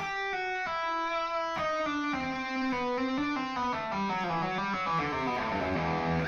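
Electric guitar playing a legato run of single notes with pull-offs, the notes stepping down in pitch. The notes come slowly for about the first second and a half, then quicker and more evenly.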